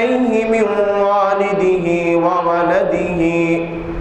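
A man's voice chanting in long, held, melodic phrases, the sung recitation style of a Bangla waz preacher, with a short breath pause near the end.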